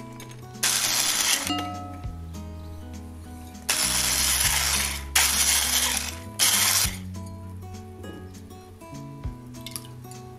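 A hand-held electric whisk beats milk, yeast and sugar in a glass bowl. It runs in short bursts: one about half a second in, then three more in quick succession past the middle. Soft background music plays underneath.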